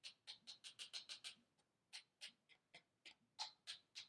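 Paintbrush tapped quickly against a thin rod to flick watercolour splatter onto paper: a run of light, sharp taps, about six a second, broken by a couple of brief pauses.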